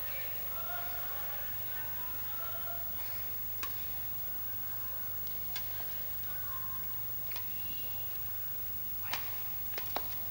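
Badminton rackets striking a shuttlecock in a rally: about five sharp, short cracks roughly two seconds apart, the loudest near the end, over a steady low hum and faint distant voices.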